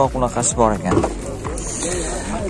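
People talking in short bursts for most of these seconds, the voices thinning out near the end.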